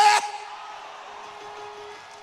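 A man's shouted words cut off just after the start, leaving a steady held note, like a church keyboard pad, over a faint hall-wide murmur that slowly fades.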